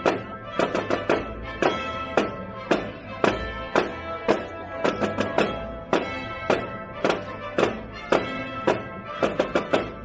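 Marching snare drums played by a small drum corps: crisp strikes about two a second, with quick flurries of rapid strokes about five seconds in and again near the end, over a steady sustained melody.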